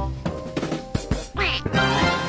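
Playful background music, with a short comic sound effect that swoops up and down in pitch about one and a half seconds in.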